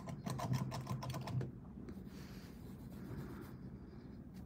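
A quick run of light clicks and taps for about a second and a half, then a faint soft rasp.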